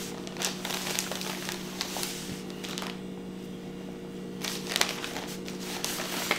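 Plastic bag crinkling and rustling in irregular bursts as shirts are pulled out of it, with a quieter stretch in the middle, over a steady low hum.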